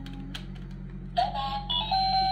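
Children's toy telephone playing an electronic melody of steady beeping tones that step from note to note, starting loudly about a second in, after a few faint clicks of its keys being pressed.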